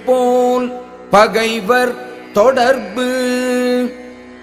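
A solo voice chanting a Tamil verse to a slow Carnatic-style melody, in four phrases of long held notes joined by gliding ornaments.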